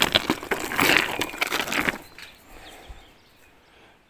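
Handling and rummaging in a bag of collected rocks: the bag rustling and stones clicking against each other, dense at first, then dying away after about two seconds.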